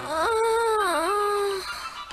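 A high-pitched cartoon voice gives one long, wordless sigh. It rises at the start, holds, dips about a second in and then trails off.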